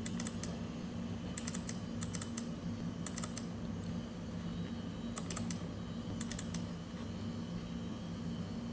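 Computer keyboard keys clicking in short irregular groups of two to four presses, over a steady low hum.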